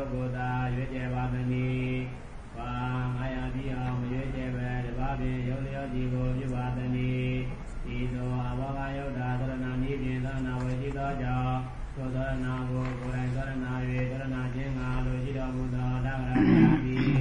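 A man's voice chanting a Buddhist recitation in a low, steady monotone. The long held phrases break briefly about two and a half, seven and a half and twelve seconds in.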